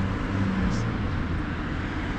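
Steady road-traffic noise: a low rumble and hiss with a faint hum.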